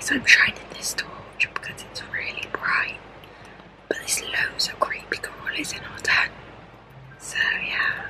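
A woman whispering close to the microphone in short phrases with brief pauses.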